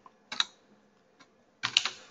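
Computer keyboard keystrokes: a few separate key presses, typing a short word.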